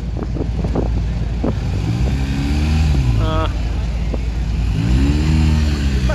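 City street traffic: a steady low rumble of engines, with vehicles rising and falling in pitch twice as they pull away and ease off.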